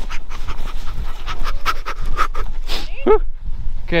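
A man panting hard as he runs down a snowy slope, his footsteps crunching in the snow in quick, irregular steps.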